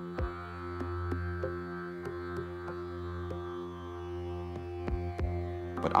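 Background music: a sustained droning chord over a low bass tone, with sparse short notes sounding over it.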